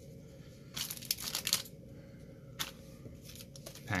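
Crinkling of a foil trading-card pack wrapper and rustling of cards being handled. It comes in a cluster of short bursts about a second in and once more briefly past the middle.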